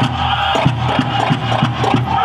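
Powwow drum group playing for a competition dance: a large drum struck together in a steady beat of about three strokes a second, under high-pitched group singing.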